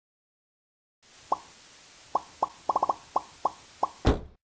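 Cartoon pop sound effects: about ten short plops over a faint hiss, starting about a second in. Most are spaced apart, with a quick run of four in the middle.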